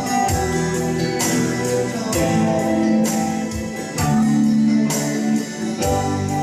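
A worship song with guitar-led backing music, a man singing over it through a handheld microphone with held notes.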